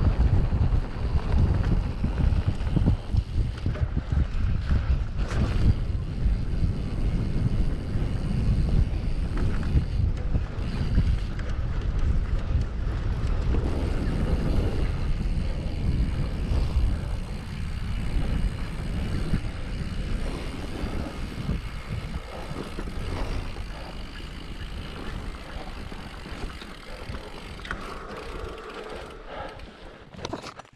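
Wind buffeting the camera microphone over the rumble and rattle of an Orbea Rallon enduro mountain bike rolling along a rough grassy track. It grows quieter over the last several seconds as the bike slows.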